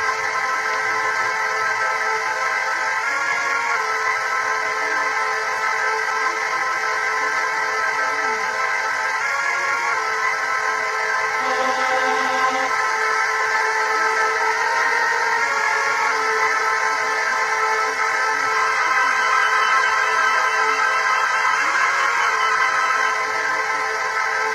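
Sustained synthesizer chords played on a keyboard with no beat, the chord changing about every six seconds.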